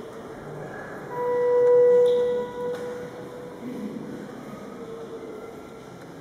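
A single steady musical note, held for about two seconds, rising in level and then fading, over a low background hum of the room.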